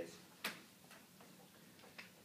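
A single sharp click about half a second in, followed by a few faint ticks, over quiet room tone.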